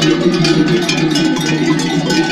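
Many bells worn by a walking flock of sheep clanking together in a dense, continuous jangle.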